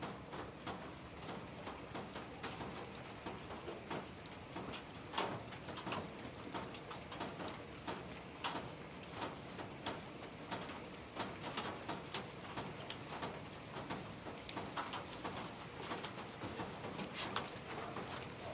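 Outdoor storm ambience: a steady hiss with scattered, irregular sharp ticks and taps throughout.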